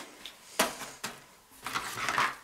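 Cardboard packets rustling and knocking against each other as a hand rummages through a cardboard box: one sharp rustle about half a second in, and a rougher scraping shuffle near the end.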